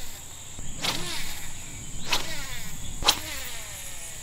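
Steady high-pitched drone of insects, crickets or cicadas, chirring without pause. Three short sharp sounds stand out over it, about a second apart.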